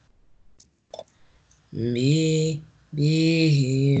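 A man's voice chanting Quranic Arabic in two long, drawn-out syllables of about a second each, after a quiet start broken by a couple of faint clicks.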